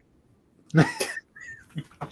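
A man's short laugh and a drawn-out "yeah" that rises and falls in pitch, heard through a video-call connection, after a moment of quiet.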